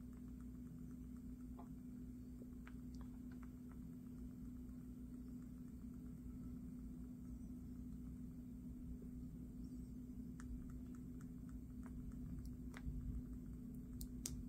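Faint, scattered clicks from handling a smartphone and a USB-C cable: button presses and the plug tapping at the port, with a sharper click near the end as the plug goes in. Under them runs a steady low hum.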